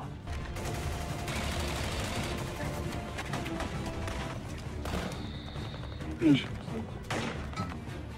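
War-film battle soundtrack: sustained small-arms fire, many overlapping shots in a continuous crackle, with a music score underneath and a brief voice about six seconds in.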